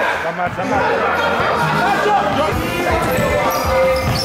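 Voices and chatter of players echoing in a sports hall over background music, with a basketball bouncing on the hall floor in the second half.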